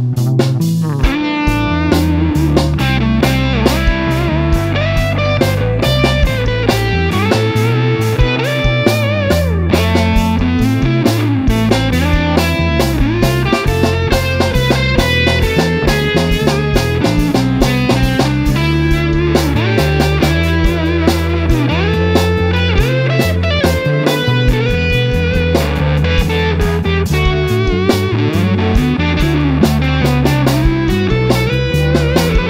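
Instrumental break in a rock song with no singing: guitar playing a melodic line with bending notes over bass guitar and a steady drum beat.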